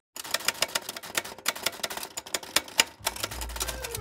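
Manual typewriter keys clacking in a fast, uneven run, starting a moment in. A low hum comes in under the typing about three-quarters of the way through.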